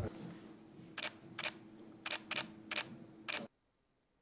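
Camera shutters clicking during a posed group photo: six short, sharp clicks over about two and a half seconds, some in quick pairs, over a faint steady hum. The sound cuts off suddenly shortly before the end.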